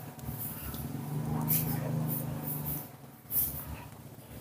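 Metal spoon scraping the soft flesh of a ripe papaya in a few short strokes, under a man's steady humming that dies away near the end.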